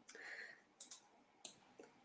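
Near silence: quiet room tone with a few faint, brief clicks.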